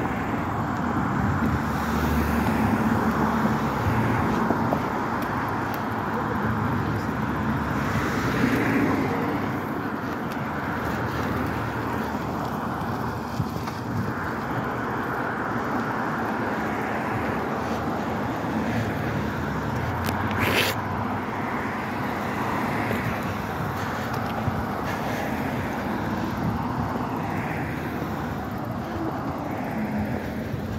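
Street traffic: cars passing one after another on a busy road, a steady rumble that swells as each goes by, with a short hiss about twenty seconds in.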